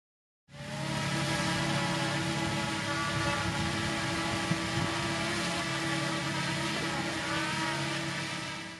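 DJI Mini 2 quadcopter flying, its four propellers giving a steady multi-toned buzz with slight shifts in pitch near the end.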